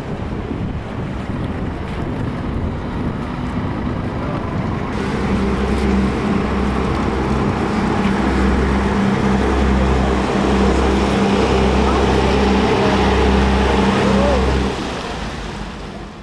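Engine of a glass-roofed river tour boat running as it passes close below, a steady low drone with a deep throb that pulses about once a second, over wind noise on the microphone. The drone comes in about five seconds in and fades out near the end.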